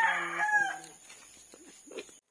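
A rooster crowing, the call fading out under a second in.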